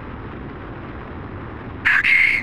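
Steady low rumble of a car driving along a paved road. Near the end a sudden, loud, shrill sound breaks in for about half a second.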